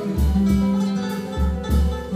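Instrumental passage of a Brazilian song: a seven-string nylon-string guitar playing, with deep bass notes in a steady pulse. Light percussion ticks along behind it.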